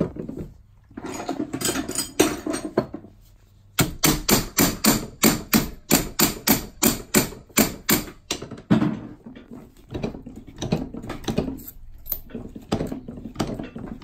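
Mallet blows on a 22k gold bangle fitted over a steel bangle mandrel, shaping the bangle. A few scattered knocks come first, then from about four seconds in a fast, even run of strikes, about four a second, which turns softer and less regular in the second half.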